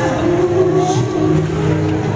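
Live R&B band music over a concert sound system, the band holding sustained chords over a steady low bass note.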